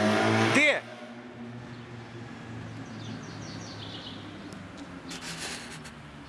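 A man shouts over the steady low drone of a low-flying aircraft passing overhead. The loud part cuts off suddenly about a second in, leaving a fainter drone and outdoor background noise.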